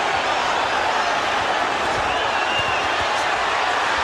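Boxing arena crowd noise: many voices cheering and shouting together in a steady din.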